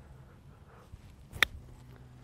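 A 60-degree Callaway Mack Daddy 4 C-grind wedge striking a golf ball on a pitch shot: one crisp, short click about one and a half seconds in.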